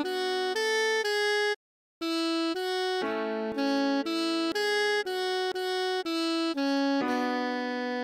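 Alto saxophone tone playing a slow melody one clean note at a time, about two notes a second, with a short break about a second and a half in, ending on a long held low note near the end.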